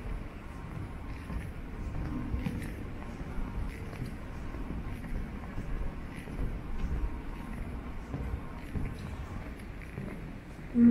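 Ambience of a large hall with visitors: a low murmur of distant voices and scattered, irregular footsteps on a parquet floor.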